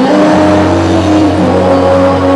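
Live rock band playing with electric guitars, held chord notes over a low bass note that comes in shortly after the start.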